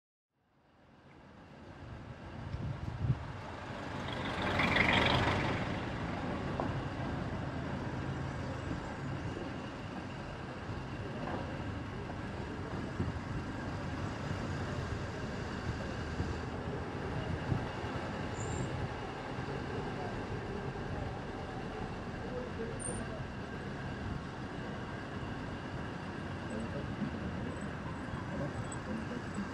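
City street traffic ambience fading in from silence: a steady hum of vehicles, with a loud rushing swell of noise about five seconds in.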